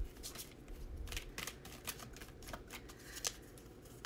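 A deck of oracle cards being shuffled by hand: a soft, irregular run of quick card clicks and flicks.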